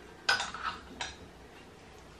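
Three light clinks of kitchenware in the first second or so, the first with a short ring.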